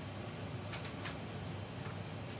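Quiet room tone with a steady low hum, and a few faint light clicks about a second in and again near the end.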